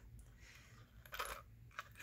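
Faint clinking of small metal charms on a dangle as they are handled, with a brief clink a little past the middle and a soft tick near the end, over quiet room tone.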